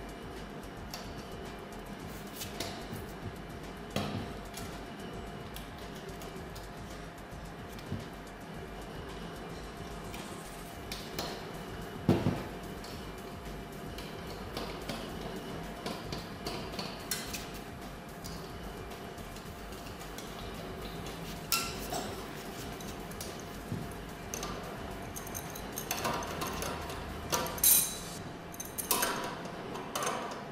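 Metal clinks, taps and knocks from tools and fittings being handled while copper central-heating pipework and a circulator pump are fitted. They come irregularly throughout, the loudest about twelve seconds in and in a cluster near the end.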